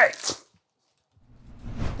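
A whoosh transition sound effect: a rising swell of noise that starts out of silence a little over a second in and grows louder.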